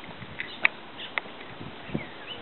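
Light, irregular clicks and knocks of a plastic toy roller coaster's ride-on car and step platform as a toddler climbs onto the car, about six sharp taps in two seconds.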